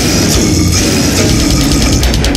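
Brutal death metal: heavily distorted guitars over dense, rapid drumming, loud and unbroken.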